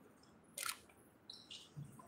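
A short sharp click about half a second in, then a few faint brief clicks and rustles against quiet room tone.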